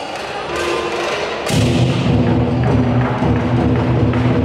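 Lion-dance percussion ensemble of drum, cymbals and gong accompanying a pole routine. It plays quietly at first; about a second and a half in a cymbal crash starts loud, rapid drumming.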